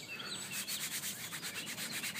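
Hand rubbing over the nylon outer shell of a Czech army surplus sleeping bag: a fast run of scratchy fabric strokes, several a second.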